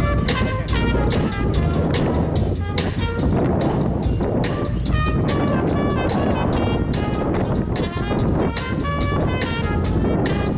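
Big-band jazz ensemble playing, with saxophones, trumpets and electric bass over a steady drum beat.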